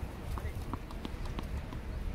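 Wind buffeting the microphone with a low, uneven rumble, with about five light, sharp taps spaced irregularly through it.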